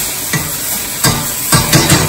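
Chopped vegetables sizzling in a frying pan as they are stirred and tossed with a wooden spatula, with a few sharp knocks of the spatula and pan, the loudest ones in the second half.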